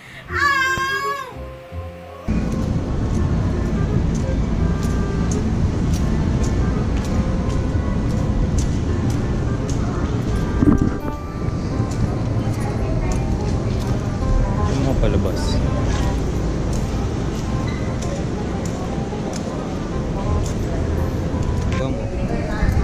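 A girl laughing in wavering, high-pitched peals. About two seconds in it cuts to a steady low rumbling noise with frequent faint clicks and a brief louder knock near the middle.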